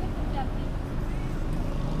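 Steady outdoor street noise: a low rumble of road traffic, with faint voices in the background.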